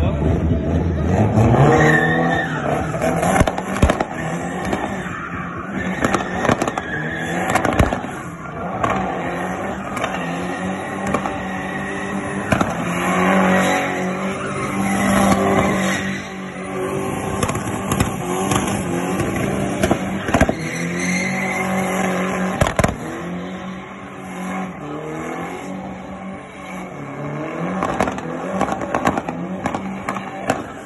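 A drift car's engine revving hard and repeatedly while its rear tyres squeal and spin in a burnout and drift. The revs climb steeply in the first two seconds, then rise and fall the rest of the way. A few sharp bangs stand out above it, a little before 4 s, near 8 s and twice between 20 and 23 s.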